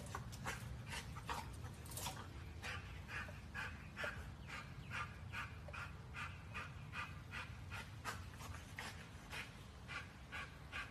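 American Bully dog panting hard in quick rhythmic breaths, about two a second, as it hangs by its jaws from a spring-pole ring toy. A steady low rumble runs underneath.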